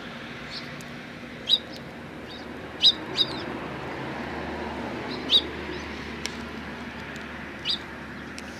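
Eurasian tree sparrows chirping: five short, high chirps, two of them in quick succession about three seconds in, over a steady background noise.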